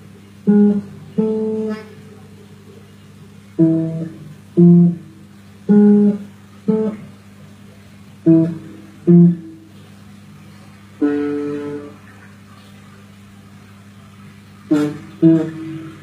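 A guitar played alone in short, spaced phrases: pairs of plucked notes that ring and fade, with pauses between them, and a longer sustained chord about eleven seconds in.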